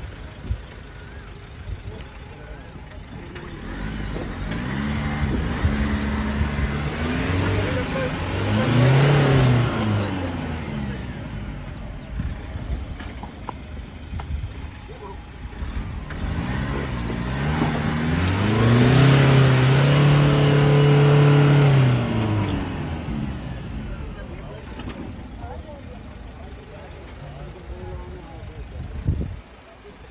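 Isuzu D-Max pickup's engine revved hard twice, each time climbing in pitch, holding high and dropping back, with a lower idle-like running in between. The pickup is straining to drive out of mud.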